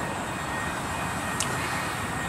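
Steady outdoor background noise: a low rumble and hiss, with a faint thin high tone held throughout and one short tick about one and a half seconds in.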